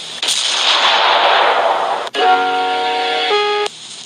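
Film soundtrack gunfire: a sudden blast with a long noisy roar that fades over about two seconds. After a sharp click, a held chord of steady tones changes once and then cuts off suddenly.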